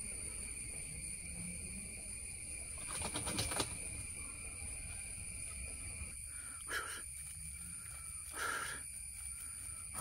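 A bird calls twice in short notes, about seven and eight and a half seconds in, over a steady high background hum. There is a brief rustling around three seconds in.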